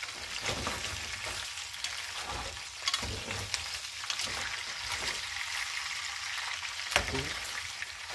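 Cooking oil sizzling steadily in a saucepan on the stove, with scattered pops and clicks, the sharpest about seven seconds in.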